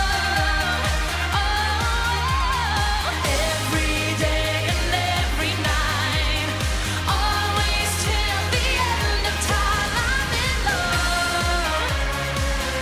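Live dance-pop song: a woman singing held, gliding melody lines over a backing track with a steady, pulsing bass beat.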